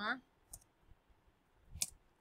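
Two computer keyboard keystrokes, a faint one about half a second in and a sharper, louder one near the end, typing the closing quote and comma of a line of Python code.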